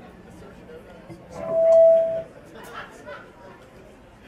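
Crowd chatter between songs, with one steady high-pitched tone from the band's amplified stage gear that swells for about a second and then cuts off sharply.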